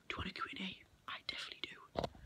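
A boy speaking in a whisper, close to the microphone.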